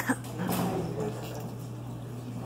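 A sharp double knock as the stage set's hanging gallery sign is bumped, followed about half a second later by a brief noisy sound lasting roughly half a second.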